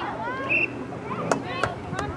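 Two sharp clacks of lacrosse sticks striking during play, a third of a second apart in the second half, over distant shouts and calls from the players.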